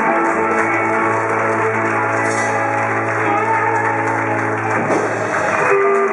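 Live rock band holding out a final chord, the electric guitars sustaining steadily until the chord stops about five seconds in. Audience applause breaks out as it ends.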